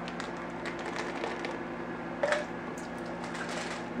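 A steady low hum, as of an appliance running in a small room, with faint scattered clicks and one short, slightly louder sound about two seconds in.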